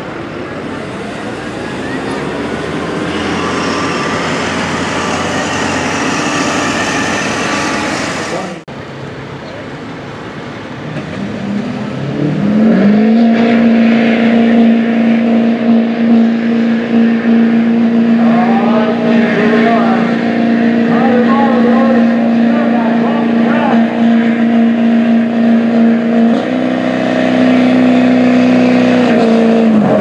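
A Ford Super Duty pickup's engine is at full throttle under load as it drags a truck-pulling sled; the sound cuts off abruptly. Then a Chevrolet Silverado HD pickup's engine revs up and holds a steady high-rpm drone while hooked to the sled, stepping up louder near the end. A public-address voice talks over it.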